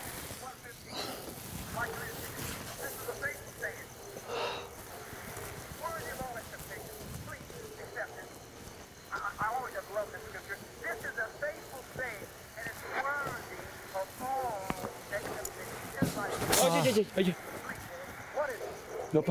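Indistinct, low voices that cannot be made out, over a steady faint hiss; the voices grow louder near the end.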